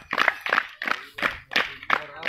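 A group of people clapping their hands together in time, about three claps a second.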